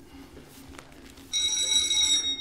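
Doorbell ringing: a sudden bright, metallic ring starts about a second in and holds steady, announcing a caller at the door.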